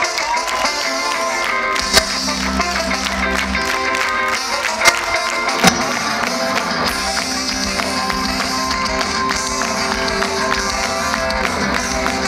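Live ska-punk band playing, with electric guitar and a horn section, heard loud through the crowd on a handheld camera microphone. Three sharp cracks close to the microphone stand out, at about two seconds and twice around five to six seconds.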